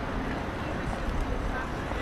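City street ambience: a steady low rumble of traffic with voices of passers-by.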